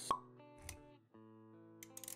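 Animated-intro sound effects over soft background music with held notes: a sharp pop just after the start, the loudest sound, then a softer low thud about half a second later, and a few light clicks near the end.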